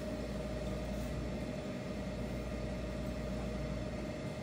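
Steady room tone of a classroom: an even mechanical hum with a faint, high, steady tone running through it.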